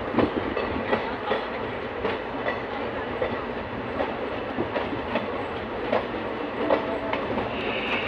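Diesel multiple unit train running at speed, heard from its open doorway: a steady rolling rumble with irregular sharp clacks as the wheels pass over rail joints and points.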